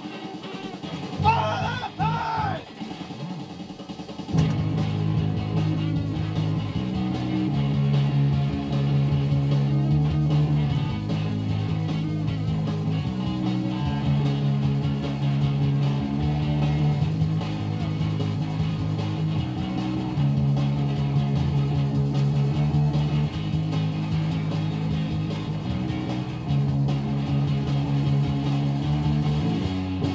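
Live indie/noise-rock music: electric guitar played over a prerecorded backing track. A few wavering sung notes come in the first three seconds. From about four seconds in, loud sustained low chords follow, changing every couple of seconds.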